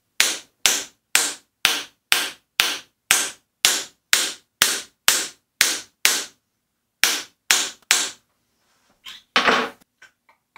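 Sharp, even taps on a scored quarter-inch glass mirror, about two a second with one short break, working to run the crack along the score line. A longer rasping noise comes near the end.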